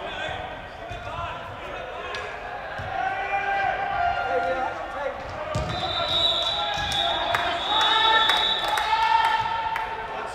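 Players' voices calling across a large indoor football hall, echoing, with the thud of a football being kicked on artificial turf. A little past halfway a long, high, steady tone sounds for about two seconds.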